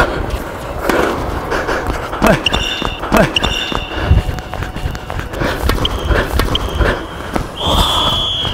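Tennis rally on a hard court: the ball is struck by rackets and bounces several times, and sneakers squeak in short high tones on the court surface.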